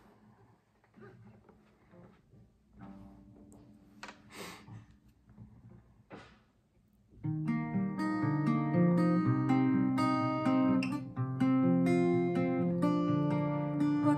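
Capoed acoustic guitar, mostly quiet at first with a few faint brief sounds, then fingerpicked from about halfway through: single plucked notes ringing over each other in a steady, gentle pattern as a song's intro.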